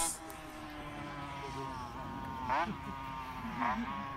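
Honda RS125's water-cooled single-cylinder two-stroke engine running around the circuit at a distance, its pitch sliding slowly down. There are two quick bursts of revs, rising and falling, about two and a half seconds in and again near the end.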